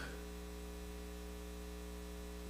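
Steady electrical mains hum with a faint static hiss.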